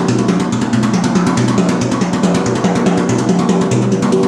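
Drum kit played fast, with a steady sixteenth-note bass-drum pattern under rapid strikes on the toms and Zildjian ZHT cymbals, along with a guitar and bass line.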